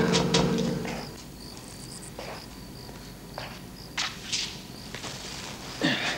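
Quiet ambience with a faint steady cricket chirp, broken by scattered footsteps and light knocks, louder near the end. A low drone fades out in the first second.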